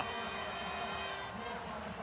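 Steady, fairly quiet stadium ambience of a ski race crowd, an even hum with no distinct event.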